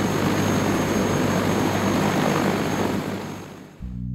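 Helicopter flying close by: a loud, steady rush of rotor and engine noise with a thin high whine on top, fading away near the end.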